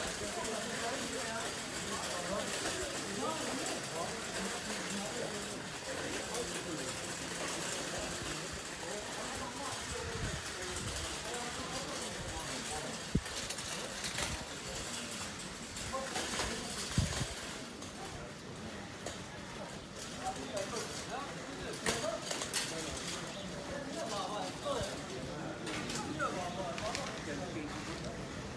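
Busy pedestrian shopping-street ambience: overlapping voices of passers-by in a steady background murmur, with a few sharp knocks, about a second or more apart, in the second half.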